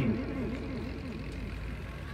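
Outdoor ambience: faint, indistinct voices of people in the background over a steady low hum.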